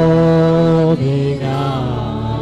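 Worship song being sung: a long held note for about the first second, then a move to a lower note.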